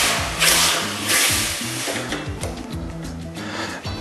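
Base of a hot copper pot of caramel plunged into water, hissing for about two seconds and then dying away as the cooking of the sugar is stopped. Background music plays underneath.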